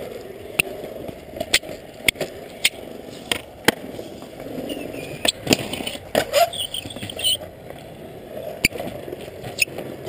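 Skateboard wheels rolling on asphalt with a steady low rumble, broken by repeated sharp clacks of the deck and trucks from pops and landings. Around the middle, a rougher scrape comes as the board grinds along a concrete curb ledge.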